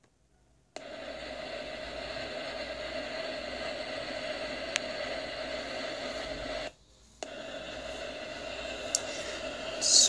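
Steady static hiss with a hum running through it. It cuts in suddenly about a second in, drops out for half a second near seven seconds, then comes back.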